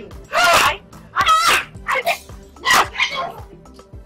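Four short, loud cries, each about half a second long and bending in pitch, roughly a second apart, over steady background music.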